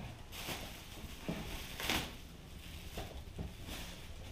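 Plastic packaging rustling and crinkling in several short rustles, the loudest about two seconds in, as the plasma cutter's ground clamp and cable are unwrapped.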